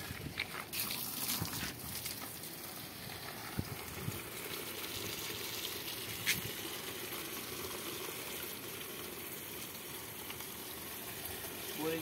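Water from a garden hose running steadily into the soil of a potted tree in a plastic drum. A few light knocks come in the first couple of seconds and one more about halfway through.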